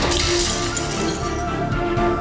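A glass vase smashing on impact, followed by shards scattering and tinkling for about a second, over dramatic background music.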